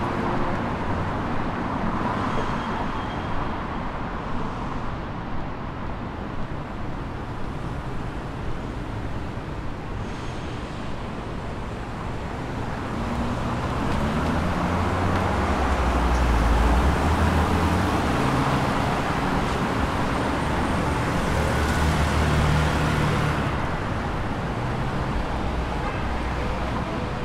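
City street traffic: a steady wash of passing cars, with the low engine rumble of a vehicle going by building past the middle and loudest a little later.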